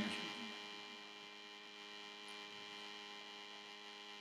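Faint, steady electrical mains hum with many overtones, the background noise of the recording. The room's echo of the last spoken word dies away in the first half second.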